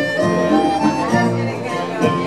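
Live fado song: a male voice singing over accordion and guitar accompaniment, with long held notes.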